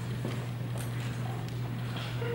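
Hushed stage room tone under a steady low electrical hum from the sound system, with a few faint taps of shoes shifting on the wooden stage floor.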